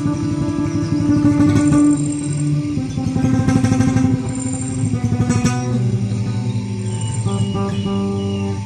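Acoustic guitar improvising with slow, ringing chords and a couple of quick strummed flurries in the middle. A field recording of a river and birdsong runs faintly beneath, with short high chirps coming and going.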